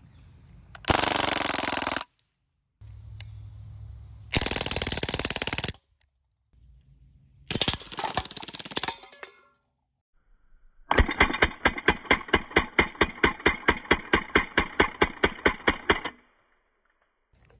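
Crosman DPMS SBR CO2-powered BB rifle firing on full auto: three short, dense bursts of about a second each, each ending abruptly, then a longer burst of about five seconds at roughly eight shots a second.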